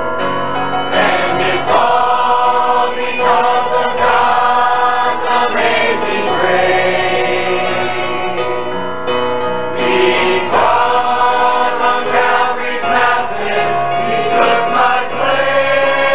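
Mixed choir of men and women singing a gospel hymn in harmony.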